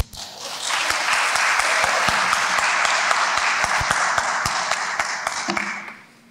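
Audience applauding in a large room. The applause builds within the first second, holds steady, and dies away near the end.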